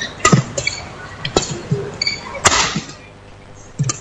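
Badminton rally: rackets striking the shuttlecock in sharp cracks about once a second, four strong hits with a few softer touches between them, echoing in a large hall.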